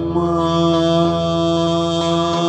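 A man's singing voice holding one long, steady note in a Cretan folk song, over plucked-string accompaniment of lute and guitar.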